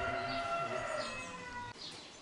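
A rooster crowing: one long call that drops slightly in pitch and stops shortly before the end, with small birds chirping.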